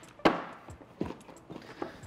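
Cardboard phone box being handled: a sharp knock about a quarter second in, then a string of lighter taps and thuds.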